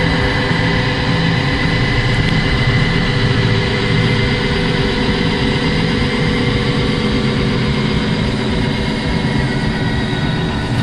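Twin engines of a 2004 Donzi 38 ZX idling steadily.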